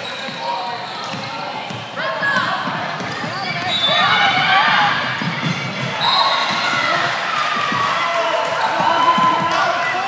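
Basketball game in a gym: players and spectators shouting over a ball bouncing on the hardwood court, the voices growing louder about halfway through.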